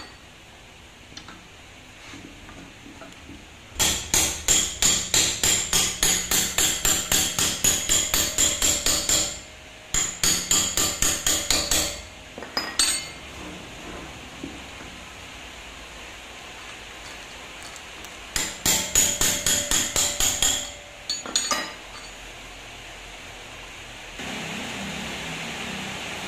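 Hammer rapping on the steel top of a front shock absorber clamped in a vise, working it open for teardown. Quick, ringing metal-on-metal strikes at about four a second come in three runs: a long one of about five seconds, then two short ones.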